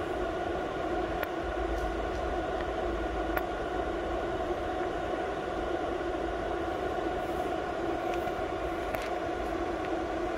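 Steady mechanical whirring hum from running machinery, even throughout, with a few faint clicks from hands handling the laser head.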